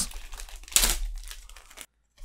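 Sealed plastic wrapping of a trading-card starter pack being torn open and crinkled by hand, with one loud rip a little under a second in. The sound cuts off suddenly near the end.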